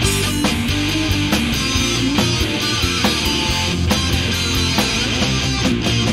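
Instrumental stretch of a rock song: a band with guitars driving it, playing steadily and loud with regular drum-like hits, and no singing.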